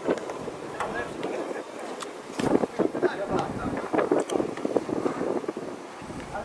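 Indistinct shouts and calls of football players and spectators, heard from a distance, with some wind on the microphone.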